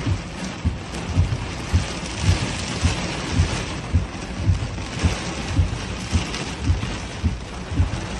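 Fast-flowing floodwater rushing, a steady noise with irregular low thumps.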